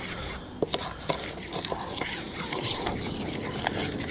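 A metal spoon stirring a dry mix of flour, polenta and sugar in a stainless steel bowl: steady gritty scraping with scattered small clicks of the spoon against the bowl.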